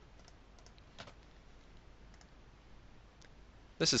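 A few faint, widely spaced computer mouse clicks over quiet room tone.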